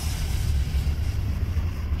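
The towing car's engine and running noise as a steady low rumble with an even hiss over it.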